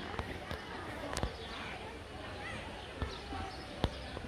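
Indistinct chatter of people's voices, with a few sharp knocks or taps scattered through it, the loudest about a second in and just before the end.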